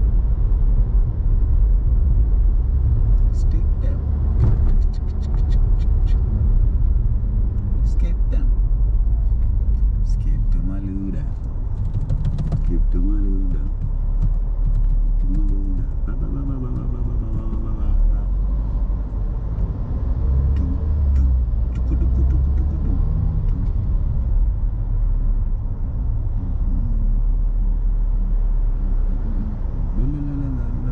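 Steady low rumble of a car driving, heard from inside the cabin: road and engine noise. A man's voice murmurs briefly about halfway through.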